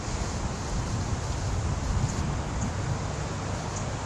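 Steady wind noise on the camera's microphone, a low, even rumble muffled by the camera's waterproof case.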